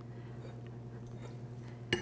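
Faint steady hum, then near the end a single sharp clink of a metal spoon striking a small glass dish, ringing briefly, as whipped cream cheese is spooned into it.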